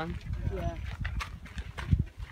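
Footsteps on a dirt hiking trail, several short knocks in the second half, over a steady low rumble on the microphone.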